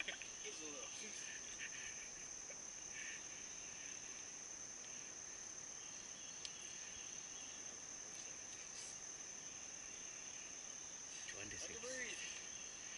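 Chorus of insects in a leafy summer woodland, a steady high-pitched drone that does not let up.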